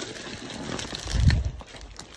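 Cardboard shipping boxes being handled and shifted by hand, with a dull thump just past a second in.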